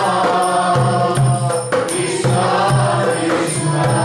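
A man singing a Vaishnava devotional chant in kirtan style. His sustained, wavering melody runs over a steady percussion beat.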